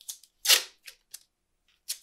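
Masking tape pulled from the roll and torn off: one short rip about half a second in, then a few faint crackles as the strip is handled.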